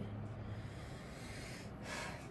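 A person's breath in a quiet room: a short, sharp intake of air near the end.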